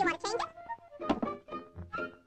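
Cartoon soundtrack: high, sped-up chipmunk chatter in the first half second, then a single thunk about a second in, over light orchestral underscore.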